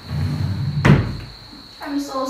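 Metal cabinet drawer sliding along its runners, then shutting with a sharp bang about a second in.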